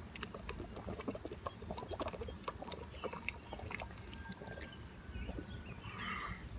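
A man drinking water from a thin plastic bottle: soft gulps and the slosh of water, with many small crackles from the plastic as he tips the bottle up to drain it.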